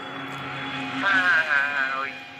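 A three-wheeler auto-rickshaw passing on the road, its engine giving a steady low hum. About a second in, a wavering voice or tone joins it.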